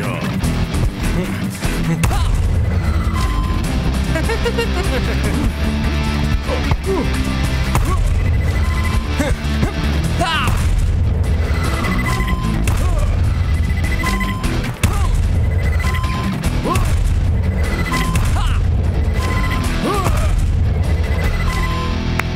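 Cartoon background music with a heavy, steady bass beat, and short high electronic beeps recurring every second or two.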